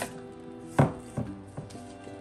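A sharp knock just under a second in and a lighter one soon after, from a cardboard shipping box and its paper packing being handled, over soft background music.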